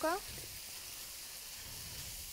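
Chicken thigh pieces, bell pepper and onion sizzling steadily in peanut oil in a wok over high heat.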